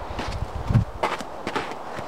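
Footsteps of a person walking in snow: a few irregular crunching steps, with a low thump about three-quarters of a second in.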